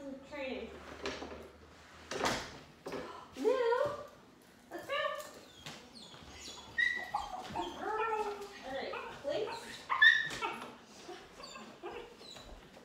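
Dogs whining and yipping in short high calls that rise and fall, scattered throughout, the loudest about ten seconds in.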